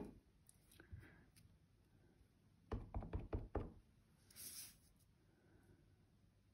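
Stamping supplies handled on a craft table: a quick run of four or five light knocks about three seconds in, then a brief hiss.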